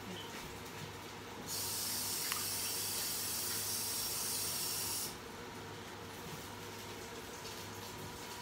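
Kitchen sink tap turned on about a second and a half in, with water running steadily for about three and a half seconds while hands are washed, then shut off.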